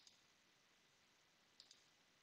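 Two computer mouse clicks against near silence, each a quick pair of sharp ticks, the second about a second and a half after the first.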